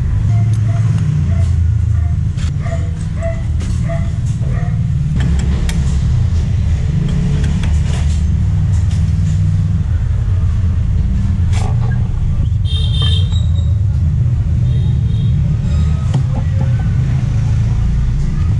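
Scattered clicks and clinks of metal engine parts being handled as a Yamaha Exciter 150's clutch-side crankcase cover is fitted, with a brief ringing metallic clink about two-thirds of the way through. A steady low rumble runs underneath.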